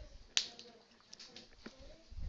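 A single sharp click about a third of a second in, followed by a few faint ticks.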